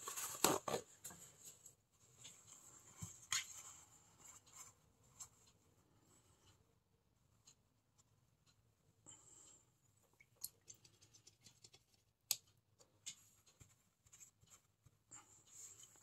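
Faint rustling and handling of a paper towel, with a few soft clicks and taps scattered through and quiet stretches between.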